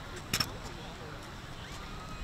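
One short, sharp metallic click about a third of a second in, from a drill rifle being handled in armed drill, over faint background voices.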